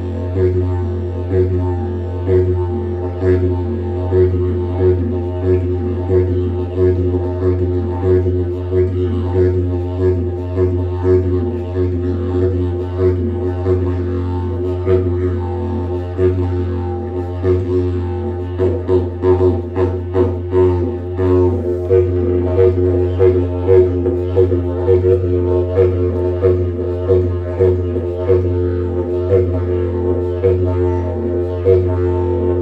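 Mago (short didgeridoo) in F played in one unbroken low drone, its overtones pulsing in a steady rhythm about twice a second.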